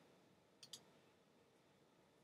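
Near silence, with a quick pair of faint computer mouse clicks a little over half a second in.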